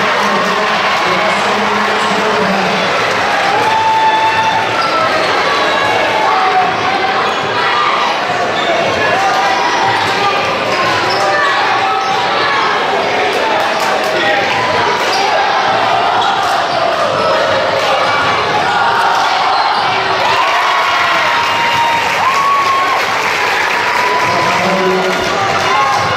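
Basketball being dribbled on a gym's hardwood floor, with steady crowd chatter and shouts from players and spectators.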